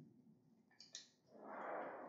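Mostly near silence, with two faint clicks about a second in. Near the end a person draws a breath, rising just before speaking.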